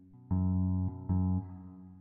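Plugged-in guitar played through EQ and compression: a low note plucked about a third of a second in and again about a second in, each damped after a moment.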